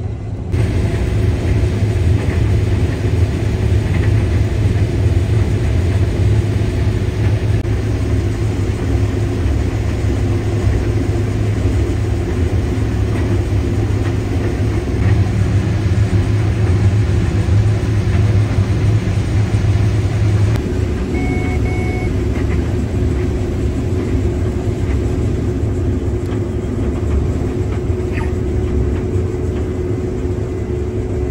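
Combine harvester heard from inside the cab, its engine working steadily under heavy load while threshing corn. About two-thirds of the way in, two short beeps sound from the cab monitor, the grain-tank-full warning.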